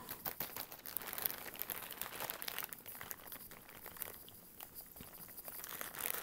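Thin clear plastic bags crinkling and rustling as they are handled, with small crackles throughout; the handling grows sparser and quieter for a while in the second half.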